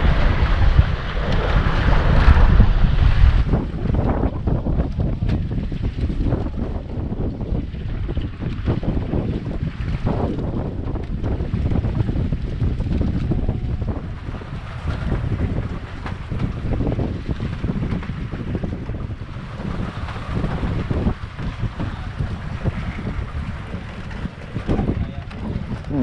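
Wind gusting over the microphone, with a heavy low rumble, and open sea water washing below. The gusts are strongest in the first few seconds.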